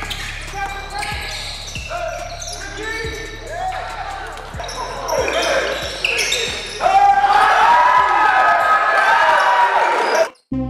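A basketball being dribbled on a gym floor in a steady rhythm, with players calling and shouting, echoing in a large sports hall; the voices get louder about seven seconds in.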